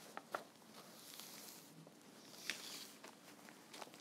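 Faint handling of small pieces of quilting fabric: soft rustling with a couple of light clicks, one just after the start and one past the middle.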